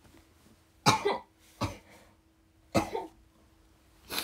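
A young woman coughing in short bursts: a double cough about a second in, a single cough just after, and another double cough near the end.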